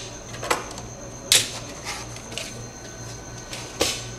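Handling noise as objects are picked up and moved on a CNC router's table: a few separate light knocks and clicks, the loudest about a second in. Under them runs a steady low hum.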